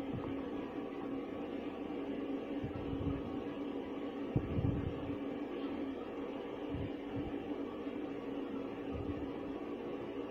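A steady low machine-like hum with a few faint low thumps, one about halfway through.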